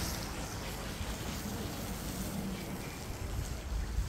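Steady rushing noise of fast-flowing muddy floodwater in a concrete roadside drainage channel, with wind buffeting the microphone.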